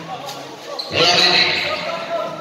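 A basketball being dribbled on a court amid voices, in a large echoing hall.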